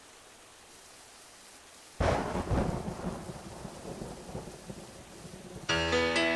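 Faint steady hiss like rain, then about two seconds in a sudden loud thunderclap that rolls and fades over a few seconds. Near the end the track's music comes in with held tones.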